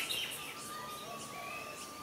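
Small birds chirping over a steady hiss of ambient noise, with a thin steady high tone running underneath.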